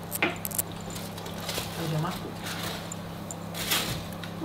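Knife cutting cooked stuffing into portions on a wooden chopping board, with the tin foil under it crinkling: a few short clicks and scrapes over a steady low hum.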